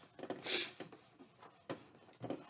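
Paper rustling and rubbing as glued printed paper is pressed and creased around a cardboard matchbox, with one sharp click a little before the end.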